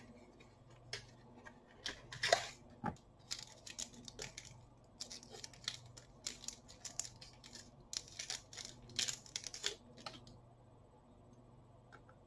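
A small cardboard product box and its wrapping being opened by hand: a run of short crinkling and tearing rustles that stop about ten seconds in.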